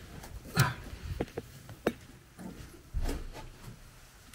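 Someone climbing a vertical ladder: a series of irregular thumps and knocks from feet and hands on the rungs, the heaviest about half a second in and again about three seconds in.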